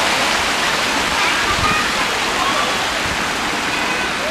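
Water in an outdoor fountain pool flowing and splashing, a steady rushing sound with faint voices over it.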